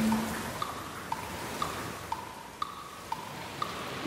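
Rain sound effect: a soft steady patter of rain, with light drip plinks about twice a second that alternate between two pitches.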